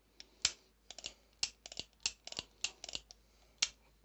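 Heritage Barkeep single-action revolver being worked by hand: about a dozen sharp metallic clicks of the hammer cocking and the cylinder turning, irregularly spaced, the loudest near the start and near the end.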